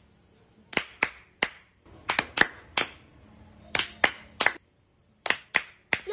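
Hands clapping in short, uneven bursts of a few claps each, with brief gaps between the bursts.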